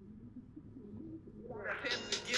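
Rap track playing faintly and muffled, only its low end heard, with the full bright sound of the song coming back in near the end.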